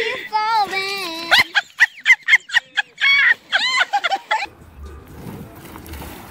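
A person's voice calling out with wavering, sliding pitch, then a run of short rapid bursts and more calling; the last second and a half is much quieter.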